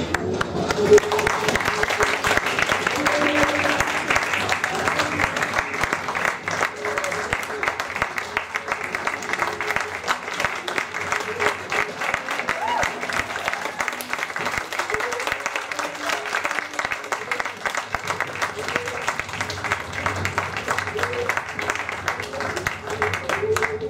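Audience applauding steadily with many hands clapping. It breaks out right as the music ends at the start, and a few voices sound among the clapping.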